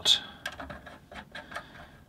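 Light, irregular metallic clicks, about four a second, as a small nut is turned by hand down onto a lock washer on the bolt of a bandsaw's front guide roller.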